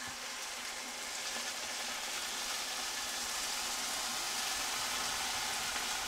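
Vegetable broth poured from a glass pitcher into a hot pot of sautéed butternut squash and bread, sizzling steadily and growing a little louder as the pour goes on.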